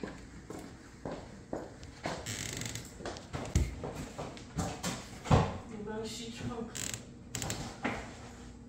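Footsteps, knocks and bag handling as bags are carried to a car and its trunk lid is opened for loading. The loudest are two dull thumps, about three and a half and five seconds in.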